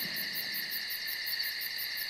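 Steady night chorus of crickets and other insects: constant high trilling with a rapid, evenly pulsing chirp above it.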